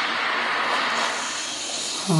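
Film teaser's closing sound effect: a steady rushing noise with no clear tones, slowly fading out under the end title.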